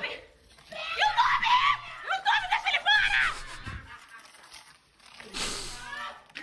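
High-pitched laughing and squealing in several short bursts over about three seconds, then a breathy burst near the end.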